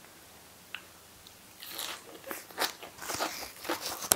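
Crunching and chewing of a crisp fresh lettuce leaf, close to the microphone. It starts about a second and a half in and runs on in quick, irregular crunches.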